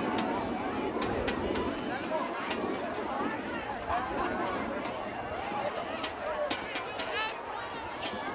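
Spectators in the stands of a football stadium chattering, many voices talking at once, with a few sharp clicks standing out.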